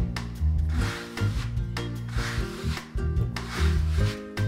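Palms rubbing and rolling soft chestnut-and-wheat pasta dough across a floured wooden pastry board, a few soft swishes, over background music with sustained notes.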